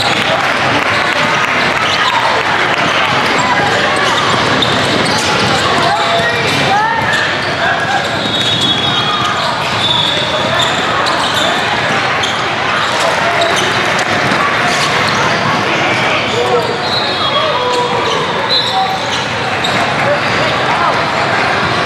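Basketballs bouncing on portable hardwood courts over a steady babble of many voices in a large, echoing hall, with short high squeaks now and then.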